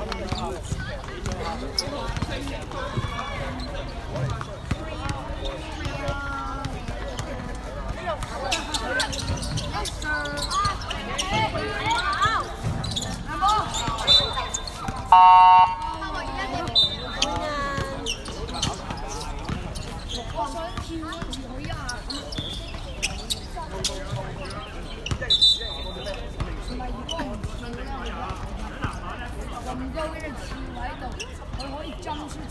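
Voices calling out and chattering around a basketball court while a basketball bounces, with a loud, short pitched blast about halfway through.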